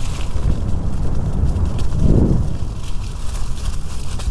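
Electric scooter riding over a bumpy, leaf-covered dirt trail: a loud, steady low rumble of wind on a helmet-mounted microphone and tyres over rough ground, with scattered knocks and a louder surge about two seconds in.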